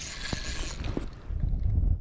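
Daiwa spinning reel being cranked to reel in a hooked fish: a whirring with a few clicks. A low rumble near the end.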